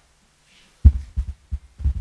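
Four low, muffled thumps in quick succession starting about a second in, the first the loudest.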